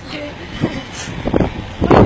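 Handling noise from a handheld phone being swung about: a low rumble with a few soft thumps, the last and loudest just before the end, with faint voices early on.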